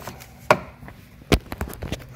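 Jumper cable clamp being clamped onto a golf cart battery's main negative terminal: two sharp metallic knocks less than a second apart, followed by a few lighter clicks.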